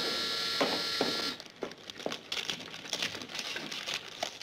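Studio audience laughter dying away about a second in. After it come scattered light clicks and the crinkling of gift-wrapping paper.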